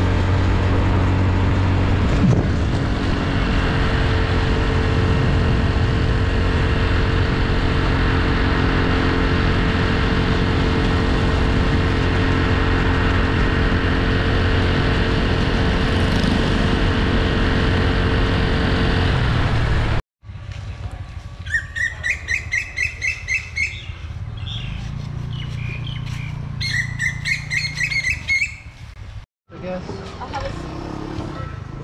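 A motor scooter runs at steady speed along a road: a constant engine drone with wind rush on the microphone. About twenty seconds in it cuts off abruptly. A bird then gives two runs of rapid, repeated rising chirps a few seconds apart.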